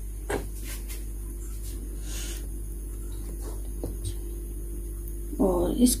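Steady electrical mains hum, with a few faint soft clicks in the first second.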